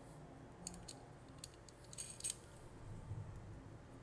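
A few faint, light metallic clicks and taps as small nuts are handled and threaded by hand onto screws through a metal bus bar on a plastic 18650 cell-holder module; the loudest clicks come about two seconds in.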